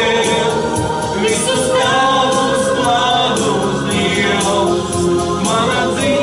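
A worship song sung in Latvian by two men and a woman into microphones, with a steady beat in the accompaniment behind the voices.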